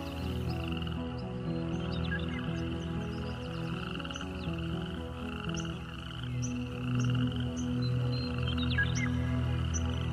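Slow, soft music of held chords over a chorus of frogs calling in pulsing trills, with a few short bird chirps.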